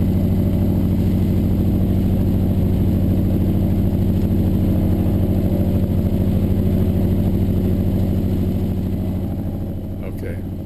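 North American AT-6D's nine-cylinder Pratt & Whitney R-1340 radial engine run up steadily at about 1,500 rpm on the ground, heard from the cockpit. The run-up lets the scavenge pump return oil to the tank. Near the end the sound sinks as the propeller is pulled back to coarse pitch and the rpm drops.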